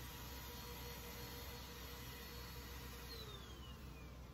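Faint steady background noise with a low hum, and a faint whine that falls in pitch from about three seconds in.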